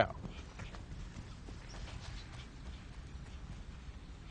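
Faint, irregular soft thuds of footsteps running on grass, over low outdoor background noise.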